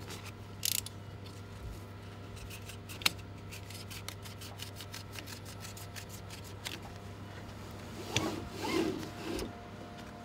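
Hand tools working on a scrapped car's door pillar and seatbelt as the belt is taken out: scraping and rubbing, one sharp click about three seconds in, a run of quick light clicks in the middle, and louder scraping near the end.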